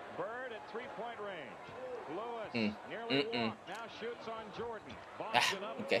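A television play-by-play commentator talks over an old NBA game broadcast while a basketball bounces on the hardwood court, with a sharper knock about five seconds in.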